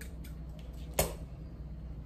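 Scissors snipping through nylon fishing line, a single sharp click about a second in, with a few faint ticks of the blades and spool being handled, over a steady low hum.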